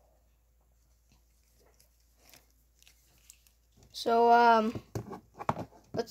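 A few faint clicks and taps of a plastic action figure being handled, then about four seconds in a short wordless vocal sound held at one pitch for under a second, followed by a few more sharp clicks.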